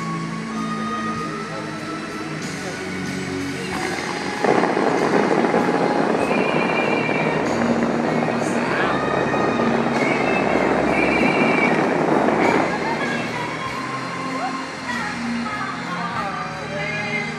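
The fountain show's music plays over loudspeakers. About four and a half seconds in, a sudden loud rush of water from the fountain jets blasting upward begins, lasts about eight seconds, and then falls away.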